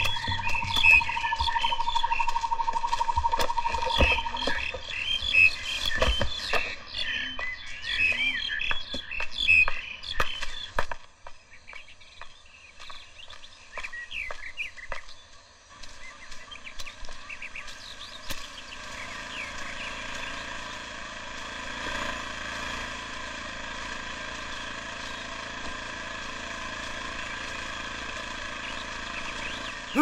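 Outdoor nature sounds on a film soundtrack: many short bird-like chirps and calls through the first ten seconds or so, with a few sharp knocks and a trilling tone at the start. After a quieter stretch, a steady even hiss with a faint hum takes over.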